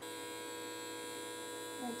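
A small handheld electric motor running with a steady buzzing hum.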